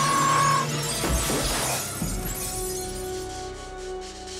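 A glass pane shattering as a man crashes through it, with a low thud about a second in and shards falling, over dramatic film score music that settles into sustained held notes.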